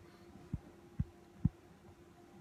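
Three dull, low thumps about half a second apart, with a faint steady hum underneath.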